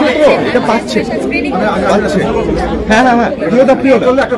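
Several people talking at once, their voices overlapping in a loud chatter.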